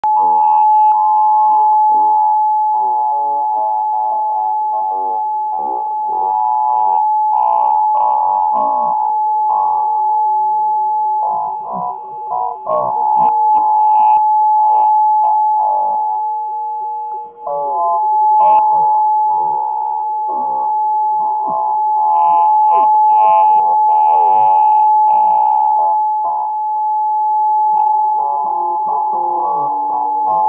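Electronic noise music: a steady, piercing sine-like tone held throughout over warbling, swooping electronic sounds and a fast pulsing buzz underneath. The loudness briefly drops out about twelve and seventeen seconds in.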